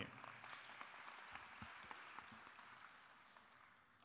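Faint audience applause, a thin patter of clapping that dies out about three seconds in.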